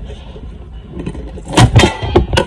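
Coconut shell breaking apart into two halves along its crack, with two sharp cracks in quick succession near the end.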